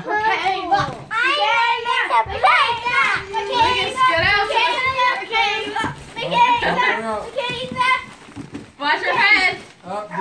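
Several children talking and shouting excitedly over one another at play, with a short lull a little after eight seconds.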